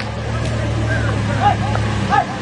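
A vehicle engine idling with a steady low hum, with people's voices talking over it.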